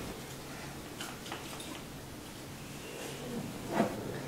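Faint handling sounds in a quiet room: a few light clicks and taps about a second in, and a short soft sound near the end, as small play-kitchen items are handled.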